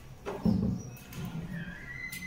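A dull, low thump about half a second in, followed by uneven low rumbling and a brief thin squeak near the end.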